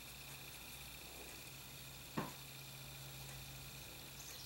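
Quiet room tone with a faint steady hum, broken by a single short click about halfway through.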